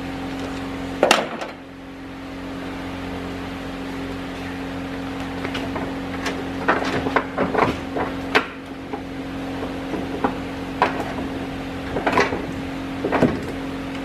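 A steady low hum under scattered metallic clicks and knocks of hand tools being handled: one sharp knock about a second in, a cluster in the middle and a few more near the end.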